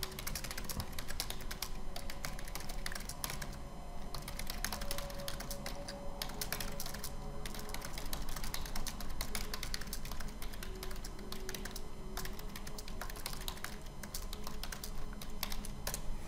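Typing on a computer keyboard: quick runs of key clicks with brief pauses between them.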